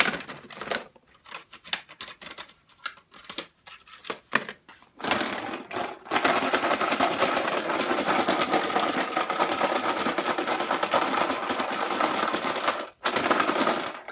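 Markers rattling together in a clear plastic tub as it is shaken: a fast, steady clatter from about five seconds in until shortly before the end. Before it come scattered clicks and knocks as the tub and markers are handled.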